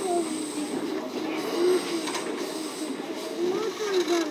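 Local electric train running along the track, heard from inside behind the driver's cab: a steady running rumble and hiss with a few light clicks from the wheels over the rails.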